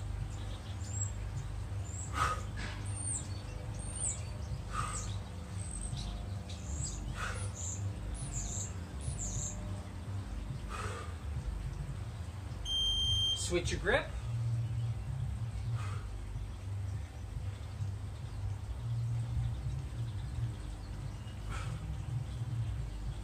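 Steel clubbell swung side to side in a workout, with a short breathy swish every two to three seconds and a louder whoosh about 14 seconds in. Birds chirp over a low steady rumble, and a single short high beep sounds about 13 seconds in.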